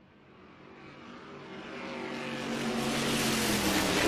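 An engine approaching, growing steadily louder from faint to loud as it comes close, like a vehicle passing by.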